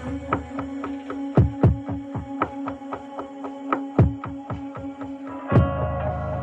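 Slowed-down hip-hop beat without vocals: deep 808 kick drums that drop in pitch, a steady ticking hi-hat and a held low synth note. A heavier kick lands near the end, where the chord changes.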